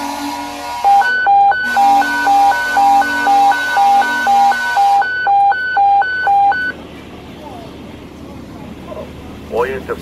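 Fire dispatch emergency evacuation alert tone over the radio: a high-low two-tone warble alternating about twice a second for about six seconds, then stopping. It signals all firefighters to get out of the fire building at once.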